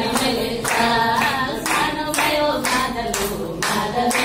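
A group clapping hands in steady time, about two claps a second, along with a woman singing a Nepali Teej folk song.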